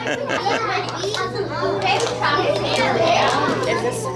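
A roomful of children talking at once: many overlapping young voices in steady classroom chatter, over a steady low hum.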